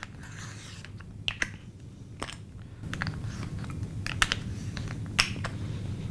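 Several sharp, separate plastic clicks and taps as a clear plastic template guide is moved across the cutting mat and snapped into place, with light handling of paper between them.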